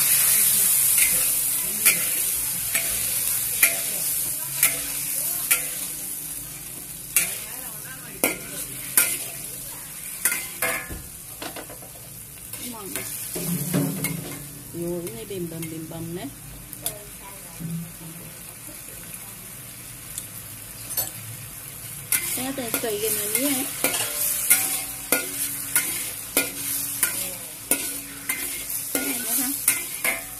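Metal spatula stirring and scraping sliced onions in a sizzling sour-spicy sauce in a wok, with repeated clinks of the spatula against the pan. The sizzle is strongest at the start and eases off by the middle.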